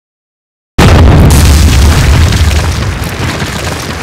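Dead silence, then about three-quarters of a second in a sudden deep trailer boom hit. The low rumble slowly fades over the following seconds.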